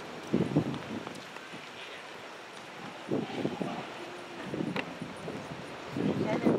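Faint outdoor ambience with brief, distant voices heard now and then.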